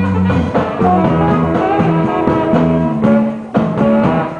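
Live band playing, with a horn section of saxophones and brass over drums and electric guitar; the music briefly drops in loudness a little past three seconds in.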